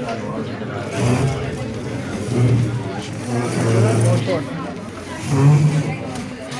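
Indistinct talking of several people in a room, with no clear words, in swells that grow louder a few times.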